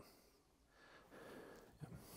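Near silence: faint room tone, with a barely audible soft rustle about a second in.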